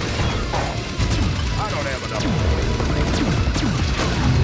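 Sci-fi film battle soundtrack: music under giant-robot weapon fire, crashes and mechanical clanking, with several quick downward-sweeping tones.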